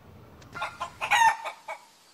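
A rooster crowing: one pitched call that swells and peaks just after a second in, then dies away.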